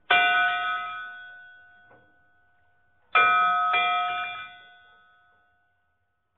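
A bell chime rung twice, about three seconds apart, each strike ringing out and fading over about two seconds; the second is followed quickly by a lighter stroke.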